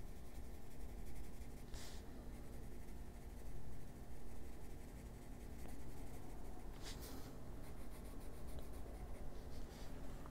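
Faber-Castell Polychromos colored pencil shading on coloring-book paper: faint, steady scratching of short pencil strokes. Two brief louder sounds come about two seconds in and again about seven seconds in.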